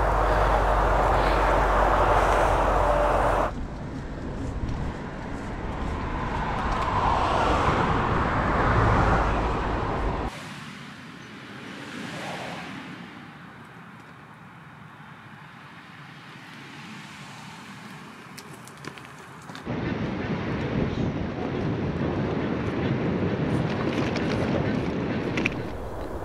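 Outdoor noise in several short cuts: wind rushing over the microphone of a moving bicycle rider, then road traffic with a swell that rises and falls, and a quieter stretch before the noise comes up again near the end.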